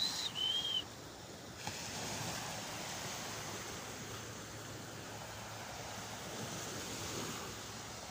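Small waves breaking and washing up a sandy beach, a steady rush of surf. Right at the start come two short, high whistle-like notes.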